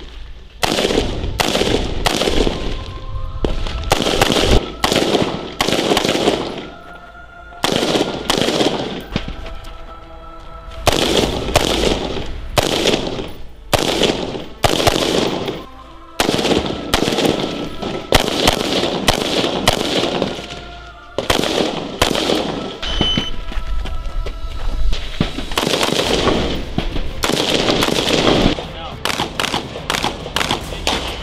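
Marine Corps 5.56 mm service rifles firing quick strings of single shots, several a second, with short pauses of a second or two between strings; each shot rings out briefly.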